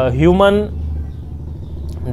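A man's voice finishes a short phrase about half a second in, then a steady low rumble carries on through the pause in speech.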